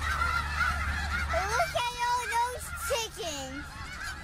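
A run of honking, goose-like calls that slide up and down in pitch, over a steady low rumble, with higher wavering chirps before the honks begin.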